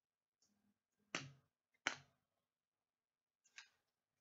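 Trading cards handled by hand: two short sharp clicks about a second and two seconds in, then a fainter one near the end, with near silence between.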